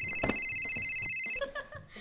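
Phone ringing: a steady electronic ring tone that stops about one and a half seconds in. A thump sounds shortly after the start.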